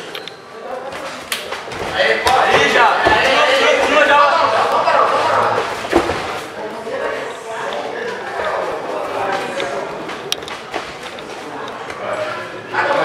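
Men shouting and calling out around a grappling match, with dull thuds of bodies hitting the padded mat, a sharp one about six seconds in.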